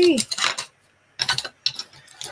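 Wooden drop spindles and small hard objects clacking against each other as they are handled in a basket, in three or four short bunches of knocks and clicks.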